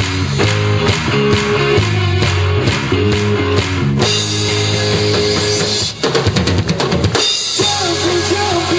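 Live rock band playing an instrumental passage: distorted electric guitars, bass guitar and a Pearl drum kit keep a steady beat. About six seconds in, the chords drop out for a quick run of drum strikes, a fill, before the full band comes back in.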